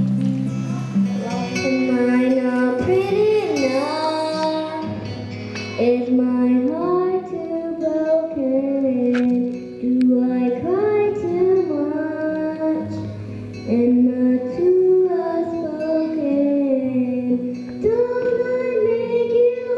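A young girl singing a slow melody into a microphone, holding notes with a wavering vibrato, over a steady instrumental accompaniment of sustained chords.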